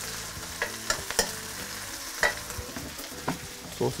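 Spinach and bean sprouts sizzling in hot sunflower oil in a stir-fry pan as they are tossed, with a few sharp clicks of the utensil against the pan.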